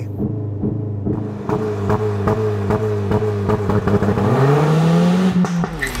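Ford Focus ST's 2.3-litre turbocharged four-cylinder petrol engine held at steady raised revs by launch control at a standstill, then the revs climb sharply about four seconds in as the car launches.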